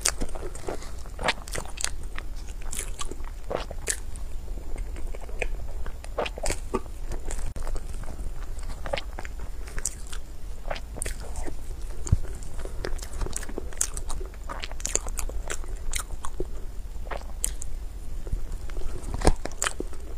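Close-miked eating of soft cream cake: irregular wet mouth clicks and smacks while chewing, with a metal spoon scooping against a clear plastic container. A low steady hum runs underneath.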